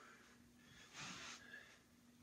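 Faint breathing of a man exercising, one clearer breath out about a second in, over quiet room tone with a low steady hum.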